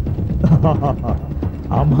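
A man laughing in short pulses, starting to speak again near the end, over rapid crackling from a fire.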